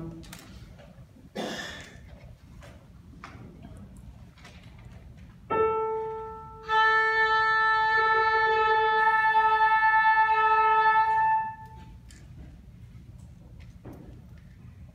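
A piano strikes a single tuning A, then the oboe and flute sound and hold that same A together as one steady note for about five seconds before stopping.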